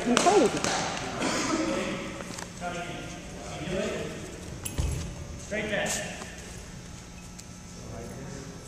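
Indistinct talk of a few people in a large, echoing gym hall, with one dull thud about five seconds in and a short sharp tap a second later.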